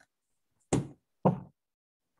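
Two knocks about half a second apart, each dying away quickly.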